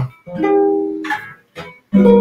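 Nylon-string classical guitar: a single chord from a walk through the chords of C minor, plucked about a quarter second in and left to ring for about a second as it fades and stops. A brief faint sound follows near the end.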